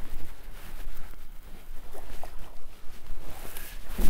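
Water splashing in uneven bursts as a hooked bass thrashes at the surface beside the boat, with wind rumbling on the microphone.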